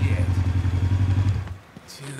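Sport motorcycle engine idling steadily, then switched off about one and a half seconds in.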